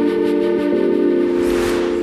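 Weather-forecast intro jingle: sustained chords held steady, shifting about three-quarters of a second in, with a rising whoosh swelling near the end into the transition.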